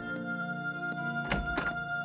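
Soft background music of long held notes, with two thumps in quick succession a little past halfway.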